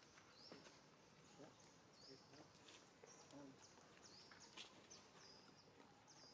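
Near silence: faint outdoor ambience with a short high-pitched chirp repeating about once a second and a few soft clicks.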